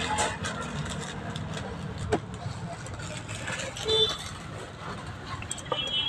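Car cabin noise, a low steady rumble, with a few sharp clicks and knocks.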